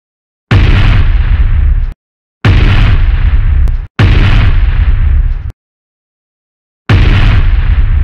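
Four loud cinematic boom sound effects, each a sudden hit with a deep rumble that lasts about a second and a half and then cuts off, with dead silence between them. The second and third come close together, and the last starts near the end.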